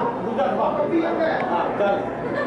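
Indistinct voices of several people talking at once, with no clear words.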